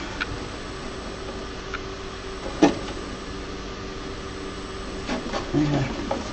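Creality Halot R6 resin printer's Z-axis stepper motor driving the build plate down toward the screen in its levelling routine, a steady whine of a few even tones. A light knock comes about two and a half seconds in.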